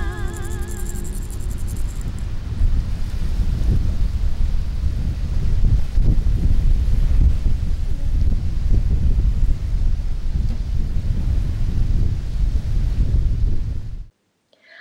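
A woman's held sung note with vibrato, over a shaken rattle, ends about a second and a half in. Then wind buffets the microphone in a loud, low, uneven rumble.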